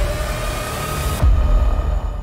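An edited-in transition sound effect: a loud rush of noise over a deep rumble, with faint steady tones. About a second in, the hiss drops away and the rumble gets heavier.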